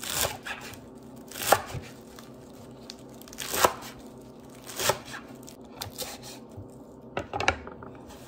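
A chef's knife chopping a bundle of fresh herbs on a wooden cutting board: slow, uneven cuts, roughly one a second, each ending in a knock of the blade on the board.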